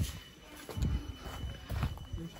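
Footsteps of someone walking: two low thuds about a second apart, over a faint high steady tone.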